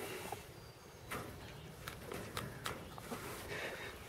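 Faint rustling with a few light clicks scattered through, from a chicken moving about in the pen.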